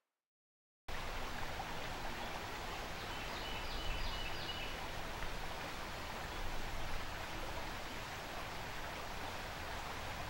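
Silence, then about a second in a steady rushing noise like running water starts and holds evenly, with a few faint high chirps a few seconds later.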